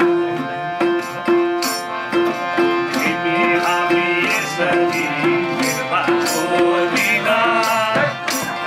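Live Nepali folk music: hand drums played with the fingers and palms in a steady rhythm under a sustained harmonium and plucked strings, with a male voice singing from about three seconds in.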